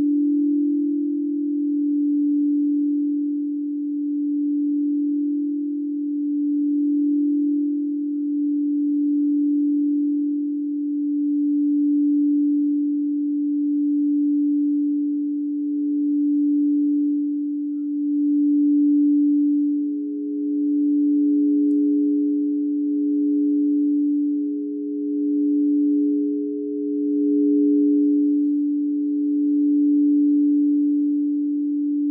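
Frosted quartz crystal singing bowls sounding a steady, deep pure tone that swells and fades every couple of seconds. A second, higher bowl tone joins about halfway through.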